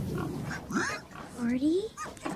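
Pigs grunting, with short calls and one call that rises in pitch near the end.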